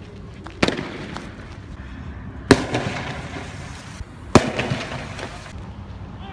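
Three sharp explosive bangs about two seconds apart, the middle one loudest, each followed by about a second of echo.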